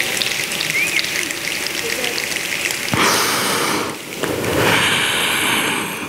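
Audience applauding in encouragement of a performer who has broken off, overcome. The dense patter of clapping swells louder about three seconds in and again near the end.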